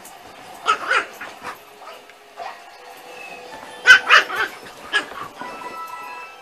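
A dog barking in two short clusters, about a second in and again about four seconds in, the second louder, with music playing faintly in the background.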